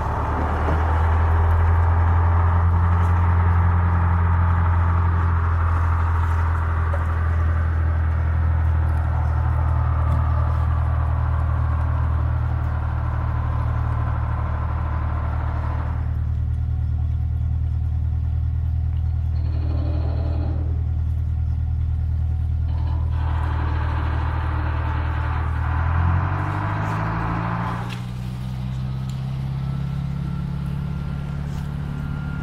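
Small motor boat's engine running steadily with a low hum while the boat pushes through broken river ice. Over it is a rushing, scraping noise of ice floes and water against the hull, which drops out twice in the middle. About 26 seconds in, the engine speeds up and its note rises.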